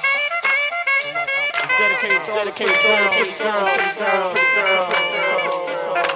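Hip hop DJ mix music: a melodic sample with many falling, sliding notes over a steady beat. The deep bass cuts out at the start.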